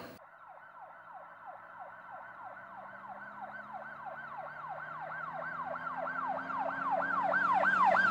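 Emergency vehicle siren in a fast yelp, each sweep falling in pitch, about three a second, growing steadily louder as it comes closer. A low steady tone runs beneath it.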